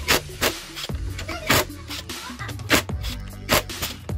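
Background music with a beat, over a cordless impact wrench running as it tightens a motorcycle's front brake caliper mounting bolt with a 13 mm socket.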